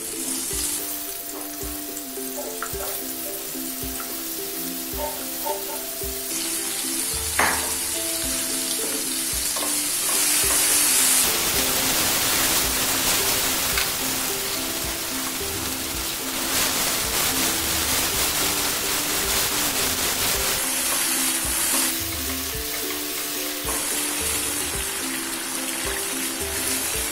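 Cut button mushrooms sizzling as they shallow-fry in oil in a nonstick pan, stirred with a spatula. The sizzle grows louder about ten seconds in as the mushrooms give off their water into the oil.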